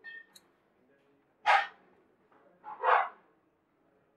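A dog barking twice, about a second and a half apart, louder than the room's other sounds.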